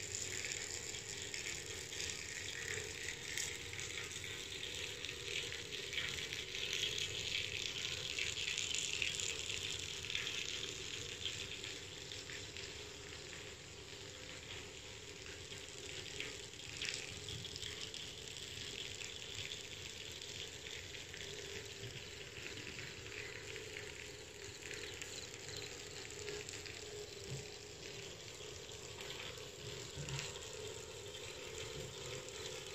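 Steady hiss of running, splashing water from the pool area, swelling a little several seconds in and then easing.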